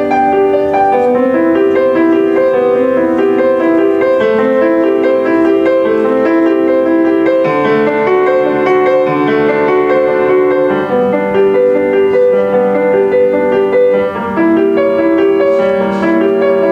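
Grand piano played solo: a continuous flow of sustained notes centred in the middle register, with a brief drop in loudness about fourteen seconds in.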